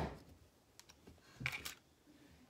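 A sharp click, then a few light clicks and a quick cluster of taps about a second and a half in: small hard objects being handled and set down on a wooden tabletop.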